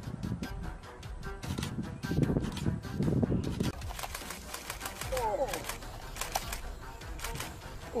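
Voices and background music, with rapid sharp clicking throughout and a short gliding cry about five seconds in.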